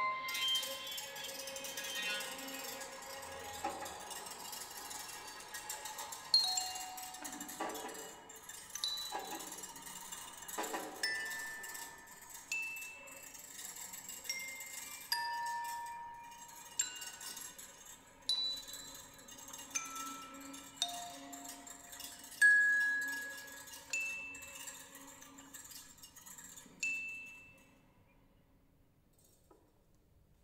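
Quiet contemporary chamber-music passage: single bell-like struck notes at different pitches, one every second or two, each ringing and fading, with a faint low held tone under them in the second half. The notes stop just before the end.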